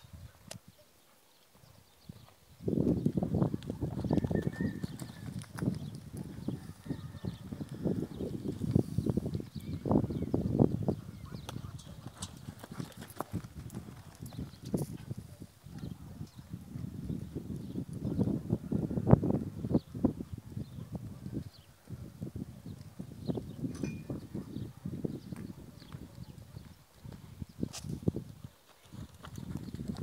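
Hoofbeats of a black Hispano-Arab mare cantering under a rider on a sand arena, a run of repeated thuds that starts about three seconds in.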